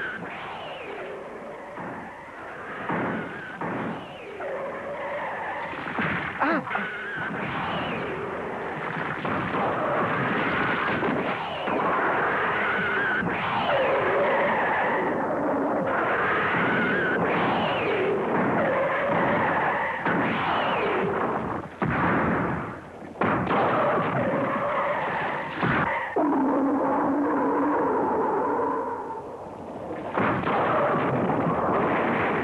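Giant-monster roar sound effects: a run of screeching cries that glide up and down in pitch, one after another, with a few sharp hits mixed in.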